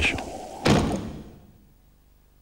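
A single heavy thump about two-thirds of a second in, dying away over most of a second.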